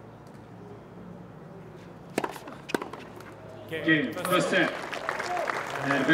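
Two sharp tennis-ball strikes about half a second apart, a serve and its return, over a low steady crowd background. About a second and a half later, cheers and shouts from spectators and players break out as the set point is won.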